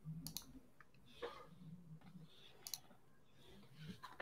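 A few faint, sharp clicks, spaced out over about three seconds, over very quiet room tone.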